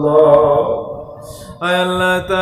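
A man chanting an Islamic supplication (dua) into a microphone in long, held, melodic phrases. One phrase fades out about a second in, and the next begins on a higher pitch near the end.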